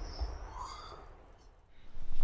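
Fading tail of a puff-of-smoke transition sound effect: a noisy whoosh dying away, with a faint high chirp-like glide partway through.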